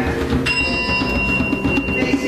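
A bell struck once about half a second in, its high ring holding steadily, over ongoing group music with hand-drum rhythm.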